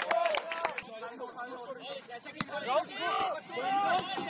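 Indistinct shouts and calls of footballers' voices on the pitch, several voices in quick short bursts, with a few sharp knocks among them, the clearest a little over two seconds in.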